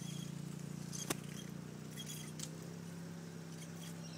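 Car engine running steadily at low speed, heard from inside the cabin as a low hum, with one sharp click about a second in.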